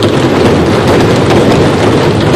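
An audience of members of parliament applauding, a dense, loud, even clatter of clapping.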